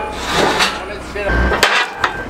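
A few sharp knocks and clanks of heavy metal being worked on an excavator's tracks and undercarriage. The loudest comes near the end, over a low steady rumble.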